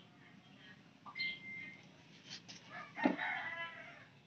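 Animal calls, most likely a bird: a short, steady high note about a second in, then a louder, longer call with several tones around three seconds in.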